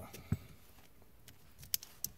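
Faint handling noise from a plastic wiring connector and hand tools as a terminal is worked out of it: one dull knock about a third of a second in, then two quick sharp clicks near the end.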